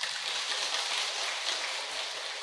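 An audience applauding steadily: many hands clapping.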